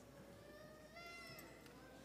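Near silence, with one faint, high-pitched cry about a second long that falls in pitch as it ends.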